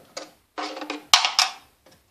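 A metal window sash and its screen frame being pushed and handled by hand, giving short rattles and knocks with one sharp, loud click about a second in.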